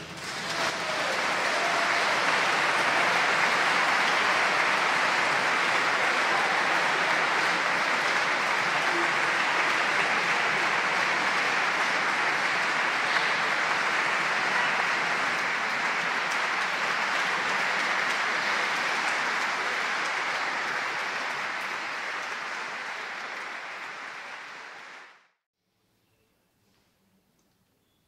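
Audience applauding after a violin-and-orchestra piece: steady clapping that builds up over the first couple of seconds, holds, then tapers near the end and is cut off abruptly.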